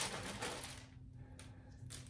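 A hand rummaging in a cloth pouch of small letter pieces, the pieces rattling and clicking against each other as one is drawn out. The rattle starts at once and fades over about a second, with a smaller rustle about one and a half seconds in.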